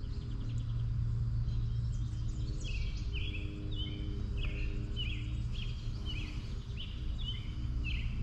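A bird giving a run of short, repeated high chirps, starting about two and a half seconds in, over a steady low background hum.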